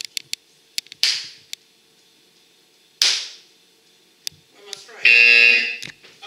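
Two sharp bangs about two seconds apart, each ringing off briefly, then near the end a loud, steady electronic buzz lasting about a second, like a game-show wrong-answer buzzer.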